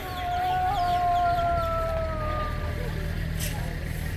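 A rooster crowing once: one long held call that sags slightly in pitch and fades out after about three seconds, over the low murmur of a crowd.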